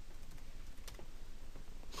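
Computer keyboard clicking a few times, with one louder click near the end, over a low steady hum.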